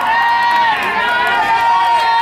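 Spectators' voices in the stands of a ballpark, over a high, held tone that slides in pitch now and then.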